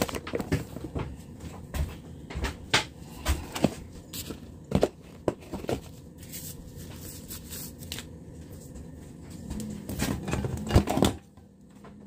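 Clear disposable plastic gloves being pulled on and handled close to the microphone: irregular crinkling, rustling and clicking that stops about eleven seconds in.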